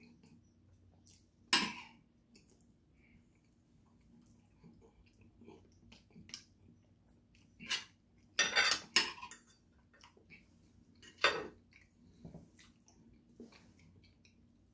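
Metal spoon and fork clinking and scraping against a plate while picking at fish. There are several sharp clinks, a loud one early, the loudest cluster a little past the middle and another a few seconds later, with small ticks between.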